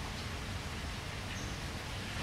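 Outdoor background ambience: a steady low rumble with a soft hiss, and a faint, brief high tone about halfway through.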